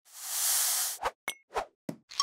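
Cartoon sound effects for sugar being added to a mixing bowl: a hissing pour lasting about a second, then a quick plop and a few short taps.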